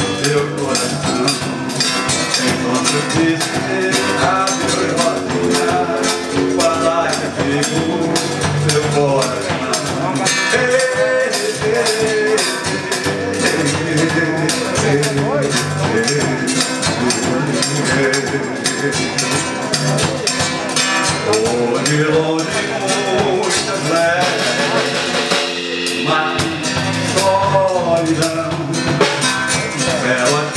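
Live band music: a nylon-string acoustic guitar and an electric bass playing a Brazilian song with steady percussion.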